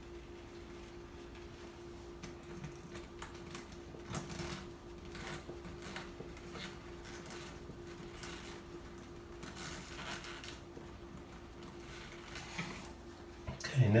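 Faint clicks and rustles of gloved hands twisting yellow wire nuts onto copper wires and handling them in a metal electrical box, over a steady low hum.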